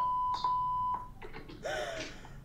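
A steady high electronic beep lasting about a second, with a short break early on.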